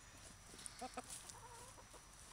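Hens clucking faintly, a few short low clucks about a second in.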